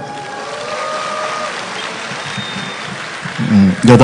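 Low open-air concert ambience: a faint crowd hum and sound-system hiss between the performer's words. A man's voice through the PA comes back near the end.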